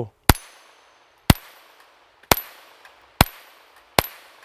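Ruger Mark IV 22/45 .22 LR pistol with a six-inch barrel fired in slow aimed fire, a steady string of sharp cracks about one a second, each with a short fading tail.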